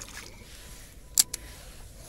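Soft splash of a released smallmouth bass hitting the lake water beside a kayak, then a single sharp click a little past halfway, with a fainter one right after.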